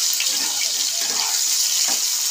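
Boiled potato chunks frying in hot mustard oil in a kadhai: a steady, bright sizzle, with a spatula stirring through the potatoes.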